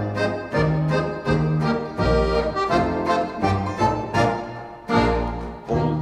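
Instrumental polka passage from an old Swiss folk-band recording, the accordion carrying the tune and chords over a steady, evenly stepping bass.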